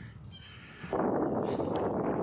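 Wind rushing over the microphone of a camera riding along on a moving bicycle. It starts suddenly about a second in after a quiet moment, then stays loud and steady.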